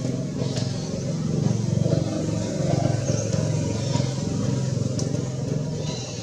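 A motor vehicle engine running steadily, a low hum that stays much the same throughout.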